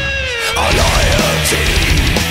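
Death-thrash metal recording: a sustained high note slides down in pitch over the first half second while the drums drop out, then wavers as the full band comes back in.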